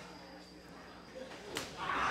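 Low hall murmur, then about three-quarters of the way in a single sharp slap-like crack: a wrestler's kick landing on his opponent's body.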